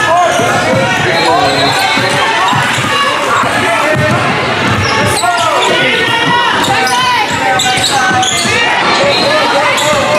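A song plays, with a sung vocal over a beat.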